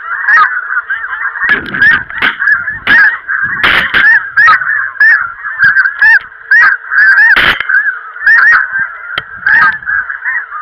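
A flock of snow geese calling close overhead, a dense, continuous chorus of short high honks. Several loud low thumps break through it, the strongest about seven and a half seconds in.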